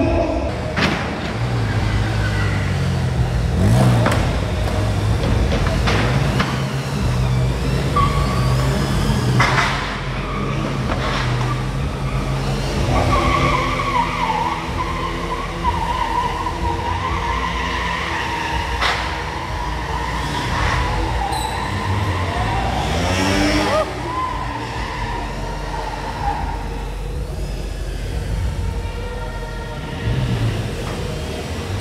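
Bajaj Pulsar stunt motorcycles running and revving on a concrete arena floor, with tyres squealing through the middle of the stretch and the engine note rising sharply a little past two-thirds of the way in.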